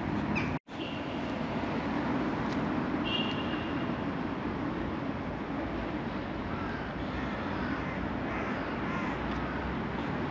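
Steady outdoor street ambience of road traffic, a continuous even hum, broken by a moment of complete silence just after the start.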